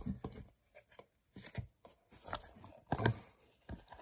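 Paper trading cards being thumbed through by hand: an irregular run of soft flicks and slides of card stock against card stock, with a sharper one about three seconds in.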